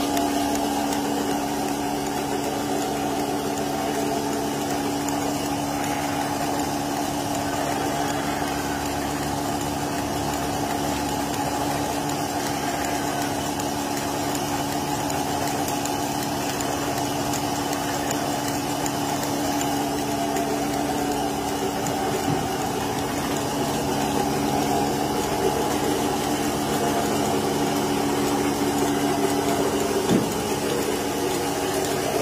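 Portable milking machine's vacuum pump unit running at a steady pitch, a constant engine-like hum.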